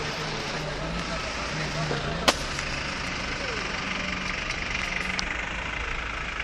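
Steady motor-vehicle engine and road noise with a low hum, and one sharp click about two seconds in.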